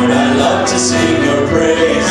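Live worship song in a church: men singing into microphones with keyboard accompaniment, notes held and sliding into one another without a break.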